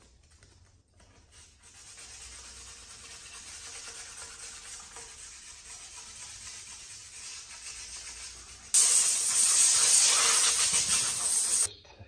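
Sandpaper rubbed by hand over the curb-rashed painted lip of an HRE alloy wheel, a steady scratchy rasp. About nine seconds in, a much louder hiss starts suddenly, runs for about three seconds and cuts off sharply.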